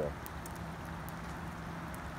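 Moderate rain falling steadily on pavement and plants, an even hiss with a few faint scattered drop ticks.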